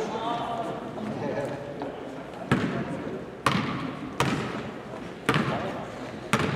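Basketball dribbled on a hardwood gym floor: four sharp bounces about a second apart in the second half.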